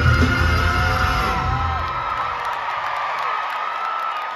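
A live rock band ends a song in an arena: the full band with its heavy bass stops about two seconds in, leaving one high note ringing on under a crowd that is cheering and screaming.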